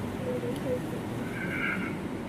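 A pause in speech: a steady background hiss of the hall picked up through the microphone, with a few faint, brief sounds.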